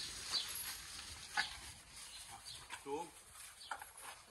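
A few faint, short crunches and clicks as bananas are broken off the bunch and chewed by an Asian elephant.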